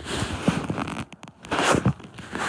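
Rasping, scraping handling noise as a phone is swung around: fabric and fingers rubbing over the microphone in two spells, the second, near the end, louder.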